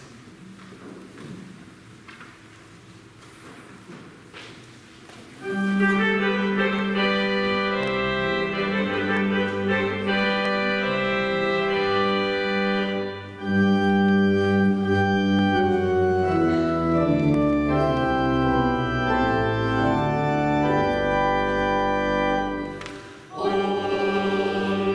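Church organ playing the introduction to a hymn: after a few seconds of faint room noise it comes in loudly with held chords, pauses briefly about halfway, and stops about a second before the end, when the singing of the hymn begins.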